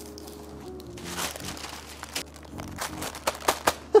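Soft background music, joined from about a second in by irregular crinkling and crackling of baking paper and foil-lined crisp packets being handled after ironing.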